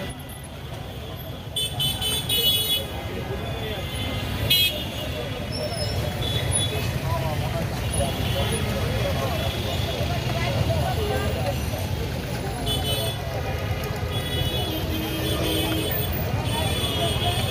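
Busy roadside ambience: a steady rumble of passing traffic with short vehicle horn toots about two seconds in, again at four and a half seconds, and near the end, over indistinct voices of people nearby.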